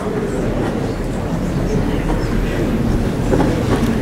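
Steady rustle and shuffle of a seated congregation settling in the pews, an even noisy murmur over a low room hum.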